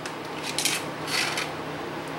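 Light metallic rustles and clinks of a magnifier lamp's articulated arm being swung down into place, two soft brushes about half a second apart.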